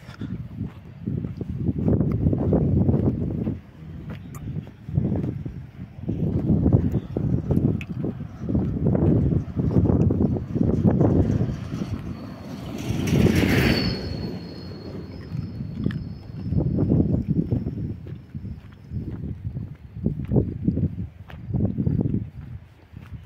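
Gusts of wind buffeting a phone's microphone outdoors, heard as irregular low rumbling surges of one to two seconds each. About halfway through comes a brief hiss with a faint high whistle that lingers for a few seconds.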